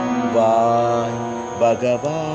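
Devotional singing in Indian classical style: a voice holds one long note over a steady drone, then sings a few short syllables near the end.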